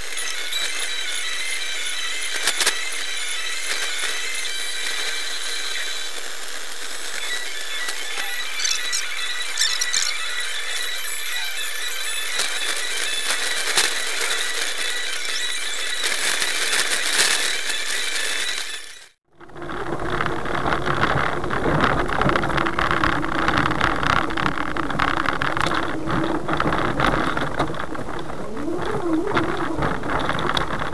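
Small electric car driving on a snowy road, heard from inside the cabin: a steady high-pitched whine with squealing tones. About two-thirds of the way in the sound cuts out and gives way to louder, lower road and snow noise.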